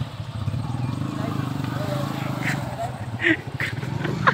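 Motorcycle engine running steadily as the bike is worked through deep mud, with a few short voices calling out over it in the second half.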